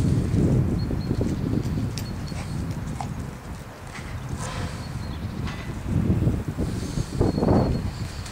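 Low rumbling wind noise on the microphone of a hand-held camera. It comes in gusts, loudest at the start and again near the end, with a few faint scattered clicks.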